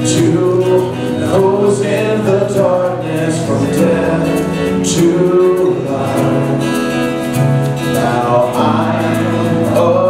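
Contemporary worship song: male and female voices sing the melody together over acoustic guitar and keyboard, playing steadily throughout.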